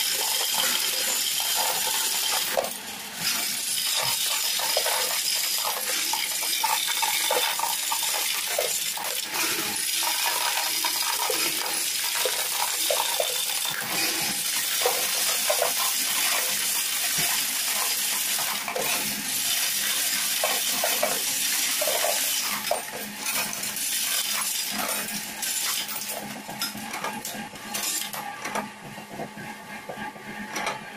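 Paras electric coin sorter running, a dense stream of coins clinking as they are sorted and drop into the clear bins around its base, over a steady motor hum. The clinking thins out and gets quieter near the end.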